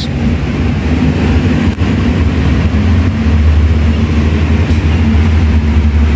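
Steady low engine rumble of a motor vehicle, swelling a little past the middle and easing near the end, with a hiss above it.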